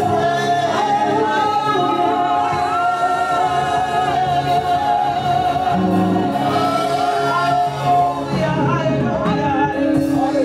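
Gospel singing led by a woman's voice through a microphone and PA, with long held notes that slide between pitches, over steady sustained chords.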